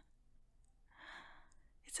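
A woman's soft sigh, breathed out close to the microphone about a second in. There is a faint click at the very start.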